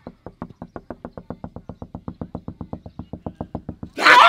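A hand knocking rapidly on a van's side window glass, a steady run of about ten sharp knocks a second, getting a little louder toward the end.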